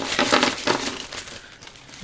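Plastic zip-top bag crinkling as it is handled and opened, louder in the first second, then softer rustling.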